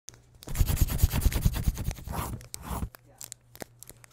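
Paper-and-scribbling sound effect: a dense run of rapid crinkling, scratching strokes for about two seconds from half a second in, thinning to a few light scratches near the end.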